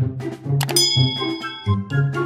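A bright bell-ding sound effect from a subscribe-button overlay: one sharp strike about two-thirds of a second in, ringing on for about a second before fading. Background music with a steady beat runs underneath.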